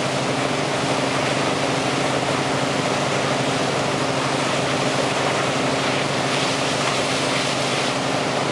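Wakesurf boat's engine running steadily under way, a constant low drone, mixed with the rushing wash of the churning wake.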